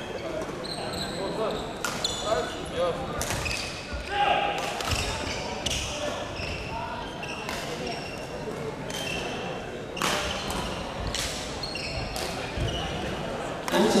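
Badminton rackets striking shuttlecocks, a sharp hit every second or so from rallies on several courts, with short high squeaks of sneakers on the wooden court floor over a murmur of chatter. The sounds echo in a large sports hall.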